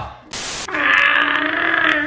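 A short burst of static-like hiss, then a long, steady vocal groan held for more than a second.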